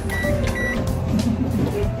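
Digital microwave oven giving two short high beeps about half a second apart as its control knob is set, over a steady low hum.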